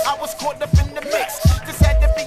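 Boom-bap hip hop track: rapping over heavy kick drums, snare hits and a steady held note.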